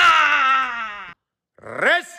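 A long howl that wavers as it falls in pitch and breaks off about a second in, followed near the end by a short rising cry.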